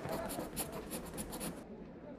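Pencil writing on paper: a quick run of short scratchy strokes that stops about one and a half seconds in.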